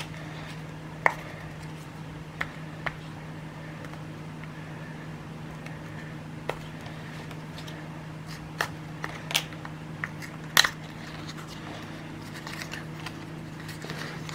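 Small cardboard box being pried and peeled open by hand: scattered crackles and clicks of paperboard flexing and tearing, a few sharper ones about a second and a half apart near the middle, over a steady low hum.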